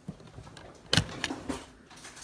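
Handling noise on a kitchen counter: one sharp knock about a second in, followed by two lighter knocks.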